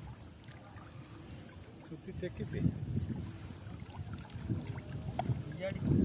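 Low, noisy rumble of wind and small waves at a muddy shoreline, with faint voices now and then, growing louder near the end.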